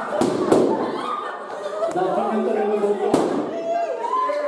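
Balloons bursting as they are squeezed: three sharp bangs, two close together at the start and one about three seconds in, over the voices of people talking in a hall.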